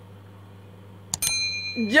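A mouse click about a second in, followed by a short bright bell ding: the sound effect of a subscribe-button-and-notification-bell overlay animation.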